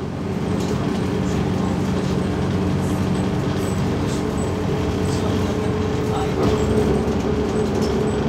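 Cabin noise inside a MAZ 206.085 city bus, its Mercedes-Benz OM904LA four-cylinder diesel running with a steady hum over a haze of road and body noise. The sound swells slightly about six and a half seconds in.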